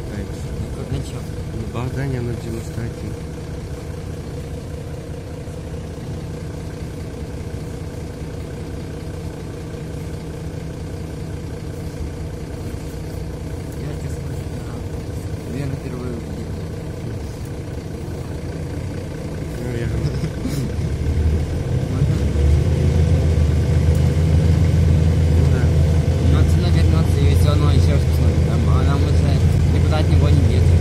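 Mercedes-Benz O530 Citaro city bus on the move, heard from inside the passenger cabin: a steady engine drone and road noise. About twenty seconds in, the engine grows clearly louder and deeper as it pulls harder.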